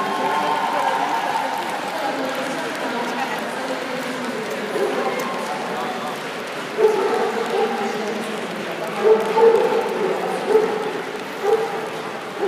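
Crowd murmur of many voices in a large hall, with a few louder peaks in the second half.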